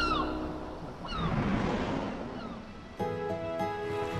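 Cartoon sound effect of waves washing in, swelling and fading over about three seconds, with a few short falling cries over it. Music starts suddenly about three seconds in.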